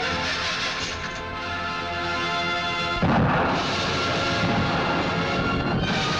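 Dramatic film score playing, cut into about halfway through by a sudden loud explosion as a car is blown up, followed by a heavy rumble under the music.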